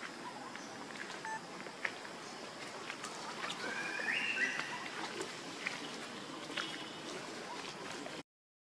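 Outdoor background hiss with scattered faint ticks and taps. A little after three seconds comes a short, high, rising animal call lasting about a second.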